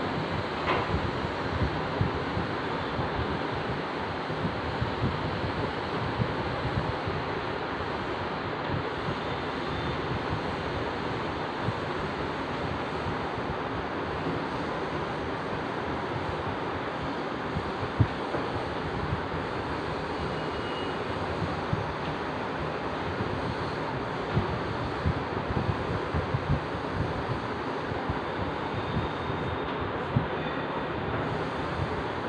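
Steady background hiss, with faint scattered taps of chalk drawing stars on a blackboard; one sharper tap about eighteen seconds in.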